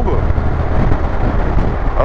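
Wind rush on the microphone and the steady running of a Honda NC700X DCT's 670cc parallel twin with an Akrapovic exhaust, cruising in sixth gear at motorway speed, with a heavy, even low rumble.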